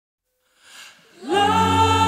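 Opening of a slowed-down, reverb-heavy pop song: after a short silence and a faint hiss, a long held vocal note swells in about a second and a quarter in and sustains.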